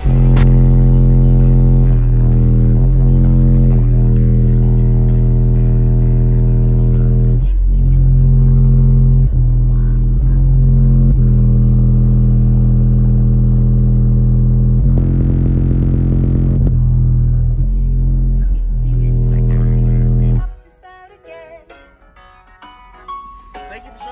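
Car audio subwoofers playing bass-heavy music very loudly, with long held bass notes that change pitch every second or two. The music cuts off suddenly near the end.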